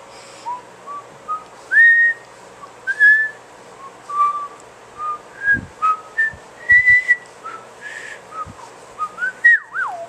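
A person whistling idly: a string of short single notes that wander up and down in pitch, breaking into a quick wavering warble near the end. A few soft low thumps fall in the middle.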